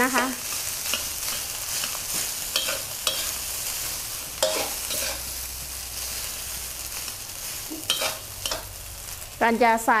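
Cold cooked rice with diced carrot and shiitake stir-frying in an aluminium wok: a steady sizzle, with a metal spatula scraping and knocking against the pan every second or two.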